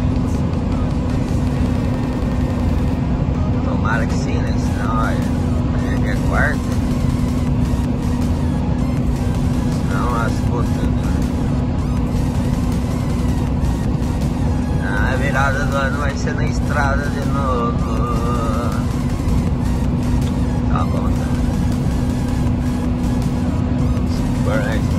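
Truck cab at road speed: a steady engine and road drone with a constant low hum. Brief snatches of a wavering voice, like singing, come through a few times, the longest near the middle.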